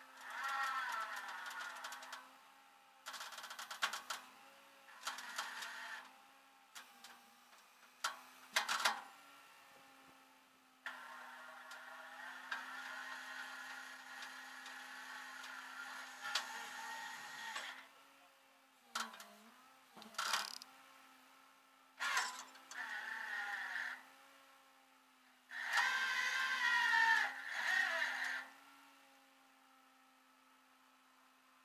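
Irregular metallic clanks, clicks and rattles from tie-down hardware being worked at the front wheel of a rollback tow truck's bed, coming in bursts with short gaps. A steady low hum runs underneath.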